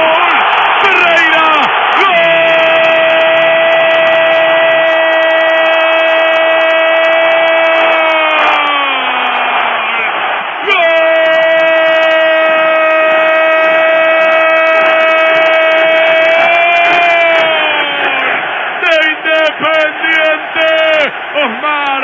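Radio football commentator's drawn-out goal cry: a man holds one long high "gol" for about six seconds, falling in pitch as it ends, then a second long held cry of about seven seconds, then quick excited shouting near the end. It is heard over a steady crowd noise, with the narrow, thin sound of an AM radio broadcast.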